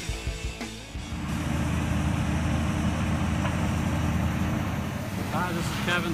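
Music with a drum beat cuts off about a second in. A steady low rumble of a large vehicle engine running follows. A man starts talking near the end.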